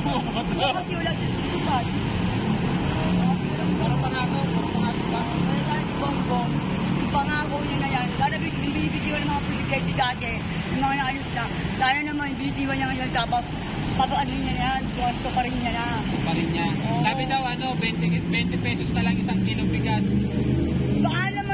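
Steady road traffic from cars and motorcycles, a continuous rumble with people's voices talking over it.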